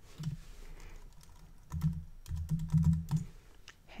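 Typing on a computer keyboard: a key click near the start, then a quick run of keystrokes from about two seconds in, typing a new button label.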